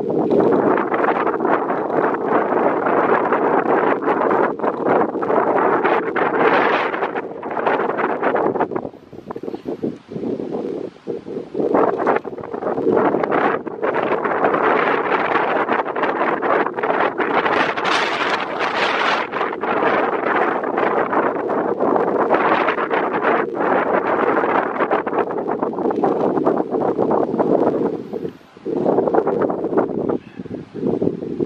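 Wind buffeting the microphone in loud, uneven gusts, with brief lulls about a third of the way in and near the end.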